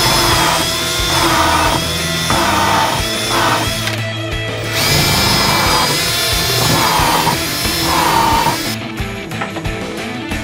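Cordless drill driving screws into white oak transom planking in a series of short whining runs, with a break about four seconds in. The drilling stops about nine seconds in, over background music.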